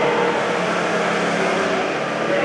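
A motor running steadily with a low hum, under a murmur of voices.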